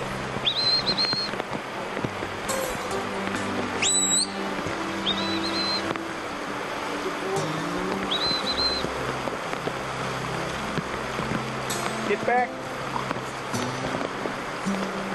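Rushing river water under steady background music, with four short high whistled notes: one about half a second in, one near the four-second mark that slides up higher, one at about five seconds and one at about eight seconds.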